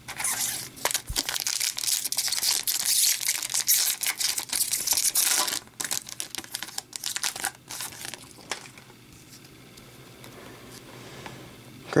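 Hockey card pack's foil wrapper crinkling and tearing as it is pulled from the box and ripped open, dense and continuous for the first six seconds or so. A few scattered crinkles follow, then it goes quiet.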